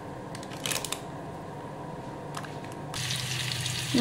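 A quiet low hum with a few soft clicks, then about three seconds in, whole trout begin sizzling as they fry in oil in a pan.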